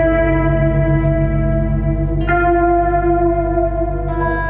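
Acoustic guitar played through effects with heavy reverb and echo: long ringing notes, with a new note struck about two seconds in, over a steady low drone.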